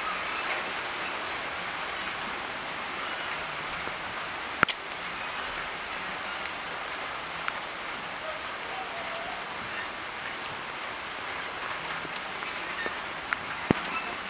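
Light rain falling steadily, broken by a few sharp clicks, the loudest about four and a half seconds in.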